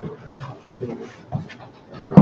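Quiet, indistinct voices in short, broken fragments, with gaps between them.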